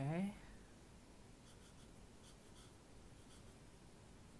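A short, rising hum from a person at the very start, then a series of faint short strokes of a felt-tip Pilot permanent marker on sketchbook paper.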